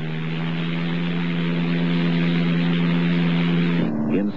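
Light propeller airplane in flight: a steady engine-and-propeller drone at an even pitch, slowly growing louder as the plane approaches, then cutting off abruptly just before the end.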